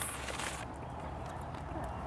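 Faint steady background rumble with a few soft clicks in the first half-second.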